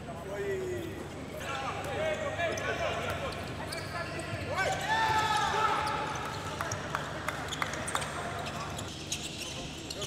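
Handball game on an indoor court: players calling out to each other, then the ball bouncing on the court as a run of sharp knocks in the second half.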